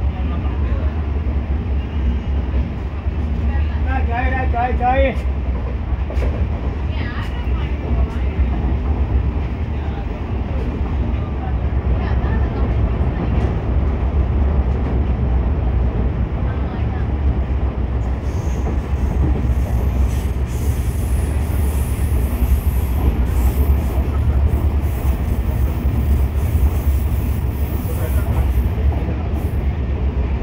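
Passenger train coach running at speed, a steady low rumble of wheels on the track heard from an open doorway.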